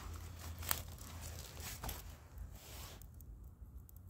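Faint rustling and a few light clicks of dry twigs being shifted by hand, over a low steady hum.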